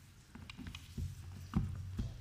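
A few dull knocks and thumps, the loudest about a second and a half in, over a low steady hum that starts about a second in.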